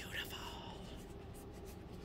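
Faint rubbing and rustling of a cloth wiped over a folding knife's blade, with a brief soft scuff right at the start.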